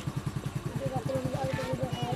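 A small engine idling with an even low pulse, about ten beats a second, with people's voices talking over it from about a second in.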